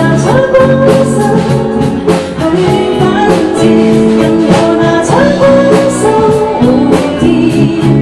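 A woman singing a pop ballad live with band accompaniment: a sung melody of held, gliding notes over guitar chords and a steady drum beat.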